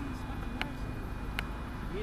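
Steady low outdoor rumble with faint voices, broken by two short sharp clicks about half a second and a second and a half in.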